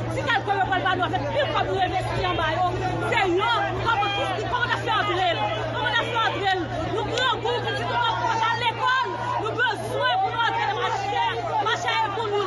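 A woman shouting emphatically over the chatter of a crowd, with a steady low hum underneath.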